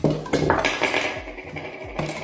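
Metal kitchen utensils clinking and knocking on a wooden cutting board as a knife, spoon and wire strainer are handled, over background music.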